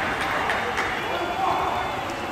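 Background noise of a football match in an indoor hall: a steady mix of distant players' voices and game noise, with no single loud event.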